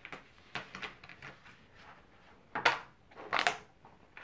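Short rustling and scraping handling noises: a few soft ones in the first second, then two louder ones in the second half.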